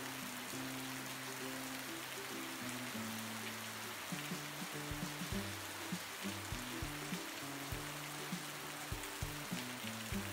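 Heavy rain falling steadily, a continuous hiss, under soft background music of low held notes that change every second or so.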